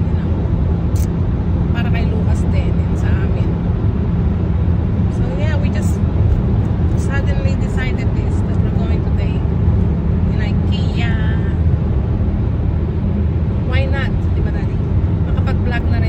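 Steady road and engine noise inside a car's cabin while driving at highway speed.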